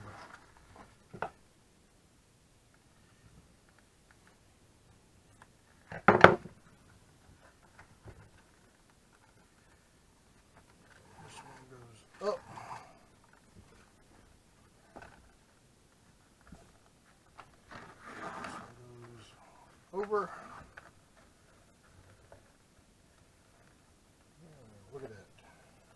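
Quiet handling of a leather axe mask and its lacing cord on a workbench, with one sharp knock about six seconds in, the loudest sound. A few brief, wordless bits of a man's voice come later.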